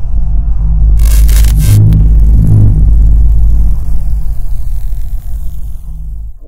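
Logo sting sound effect: a loud, deep rumbling swell with a bright whoosh about a second in, fading toward the end.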